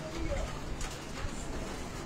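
A bird cooing briefly near the start, over the background noise of a large hall, with a couple of light knocks.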